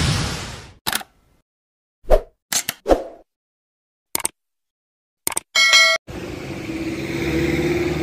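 Animated-intro sound effects: a rush of noise that fades out in the first second, then a series of short pops with silence between, and a bright ding about five and a half seconds in. From about six seconds, steady street noise with a running vehicle engine.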